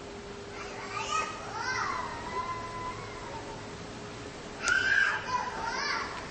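Children's voices calling out: a drawn-out call that falls in pitch, starting about a second and a half in, then a louder, sharper group of cries near the end.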